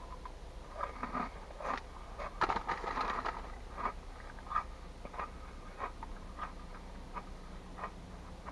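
Cheddar Jalapeño Cheetos being chewed with the mouth close to the microphone: soft, irregular crunches and crackles. The foil snack bag crinkles as a hand reaches into it.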